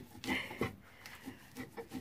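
Stone mano being worked over a stone metate, breaking up cooked nixtamal corn kernels on the first coarse pass: faint, scattered scraping and crunching of stone over grain.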